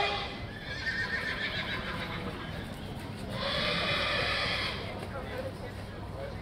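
A horse whinnying, the loudest call about three and a half seconds in and lasting about a second and a half.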